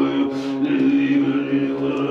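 A steady, held low drone with many overtones, sustained on one pitch through the moment, with a brief breathy hiss about half a second in.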